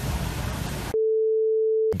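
Steady rush of water spray and road noise from inside a vehicle driving through shallow surf. About halfway it cuts off abruptly to a single flat electronic beep, one steady pitch held for about a second.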